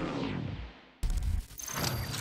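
Backing music fading out, then about a second in a sudden low hit with a sweeping rush and high ringing tones: an edited logo sting sound effect for a graphics transition.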